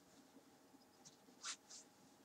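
Necktie fabric rustling as the knot is pulled tight: two short, faint swishes about one and a half seconds in, otherwise near silence.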